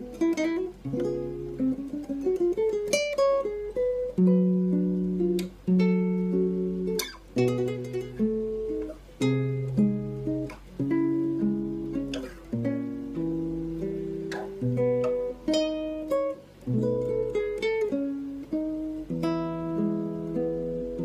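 Solo acoustic guitar played fingerstyle: single plucked melody notes over lower bass notes, each note ringing briefly before the next.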